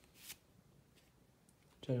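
A cardboard basketball trading card sliding off the top of a hand-held stack: one brief swish about a quarter second in, then a faint tick.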